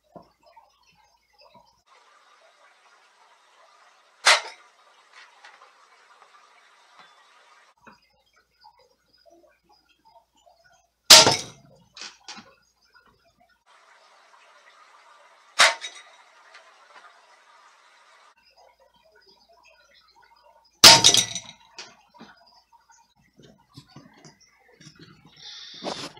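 Four shots from a Crosman Vigilante CO2 air pistol, several seconds apart, each a sharp crack with a few small clicks after; the pellets strike the steel food can tops without going through.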